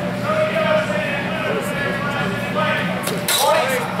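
Several voices talking in a large echoing hall. About three seconds in, a few sharp clacks come quickly one after another: steel training longswords striking in a fencing exchange.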